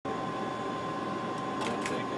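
Steady flight-deck hum of ventilation and electronics, with a constant high tone running through it.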